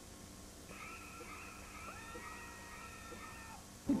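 Several high-pitched screams at once, held for about three seconds, starting just under a second in and stopping shortly before the narration begins.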